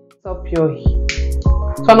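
Background music with a steady beat, dropping out for a moment at the start and then going on; a woman's voice begins speaking near the end.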